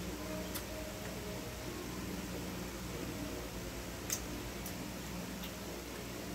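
A few small sharp clicks, the loudest about four seconds in, over a steady low room hum: rambutan rinds being split and peeled open by hand.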